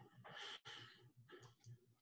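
Near silence, with a faint breath out close to a microphone in the first second.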